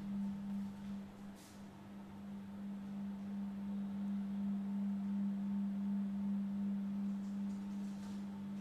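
A steady low hum on a single held tone, with a faint brief rustle about a second and a half in.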